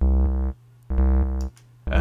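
Ultrabeat drum synth's sine-wave oscillator playing a low, bassy kick-drum tone in half-second notes about once a second, with a third note starting near the end. Saturation drive is pushing the sine toward a buzzier, squarer wave.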